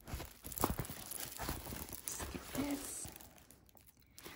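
Irregular crinkling of the clear plastic cover film on a diamond painting canvas as the canvas is handled, dying away near the end.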